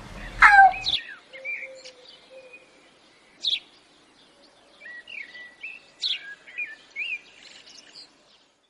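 A girl's short yelp that falls in pitch in the first second, then birds chirping in short, scattered calls, sparse at first and busier from about five seconds in.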